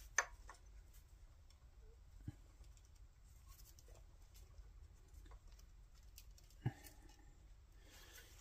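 Near silence with three faint, short clicks, one just after the start, one a couple of seconds in and one near the end: a screwdriver and engine parts knocking lightly as a screwdriver pushes on the governor shaft of an open Predator 212cc engine while the crankshaft is turned by hand.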